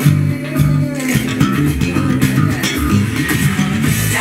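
Status 3000 headless carbon-fibre electric bass played slap-style through a bass amp, a run of short, punchy funk notes over a funk backing track.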